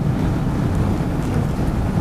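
A steady, even rushing noise with no voice in it, about as loud as the speech around it, which starts right as the speech breaks off and gives way when the speech resumes.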